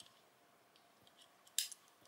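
Door of a 1/64-scale Matchbox die-cast BMW M4 Cabriolet clicking shut, a short sharp snap about one and a half seconds in, with faint fingertip handling clicks before it.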